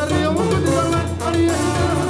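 Live Mexican banda music: a brass and woodwind band playing over a steady bass, with male voices singing on top.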